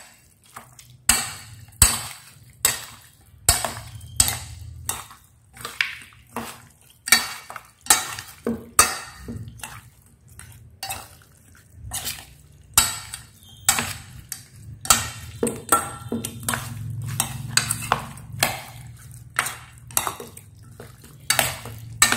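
A metal spoon clinking and scraping against a stainless steel bowl while stirring chunks of raw chicken in a marinade, with sharp, irregular clinks about one or two a second. A faint low hum runs underneath.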